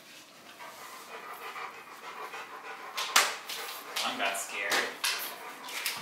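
A Rottweiler panting close by, then from about halfway through several sharp clicks and knocks as a framed board and a sheet of paper are handled on the floor.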